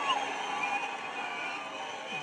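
Background ambience of a gathered crowd heard through a public-address setup: a low steady murmur with a few faint, distant voices.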